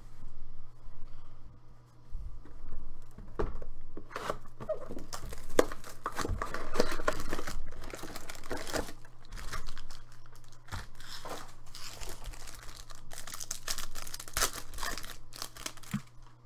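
A cardboard hobby box of 2017 Panini Prizm football cards being opened and its foil card packs handled, with irregular crinkling, rustling and tearing throughout.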